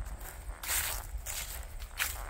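Footsteps through grass scattered with dry fallen leaves, a few soft swishing steps.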